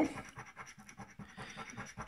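A coin scraping the rub-off coating from a paper scratch-off lottery ticket in a quick run of short, uneven strokes.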